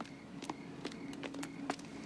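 Footsteps: several irregular sharp steps, the loudest about one and a half seconds in, over crickets chirping in a steady repeating pattern.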